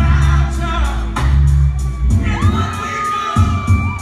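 Live R&B slow jam with a deep bass line and steady beat, under a cheering crowd. About halfway in, one long high-pitched scream rises, holds for about two seconds and falls away.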